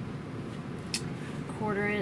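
Fabric pieces being handled and lined up on a sewing machine bed, with a low steady background and one sharp click about a second in. A woman starts speaking near the end.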